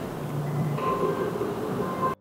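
Steady rushing background noise in the kitchen, with a faint low hum underneath.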